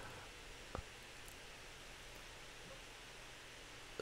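Very quiet room tone: a faint steady hiss, with one short soft click a little under a second in.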